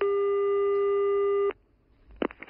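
Telephone ringback tone heard down the line: one long steady beep of about a second and a half while the called phone rings at the other end, cut off sharply.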